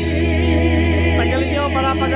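Singing through a microphone and loudspeaker over a music backing track: long held notes with vibrato over a steady bass.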